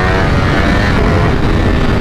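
Ducati Panigale V4 SP's 1103 cc V4 engine under hard acceleration on the Stage 2 ECU flash. Its rising note drops right at the start as it shifts up, then it pulls on beneath a heavy rush of wind on the microphone.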